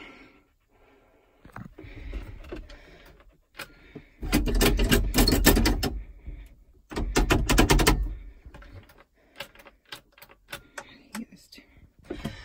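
Clicking and rattling in a tractor cab as the ignition and controls are worked on an engine that is not running. There are two louder bursts of dense clatter with a low rumble, about four and seven seconds in, and scattered clicks after them.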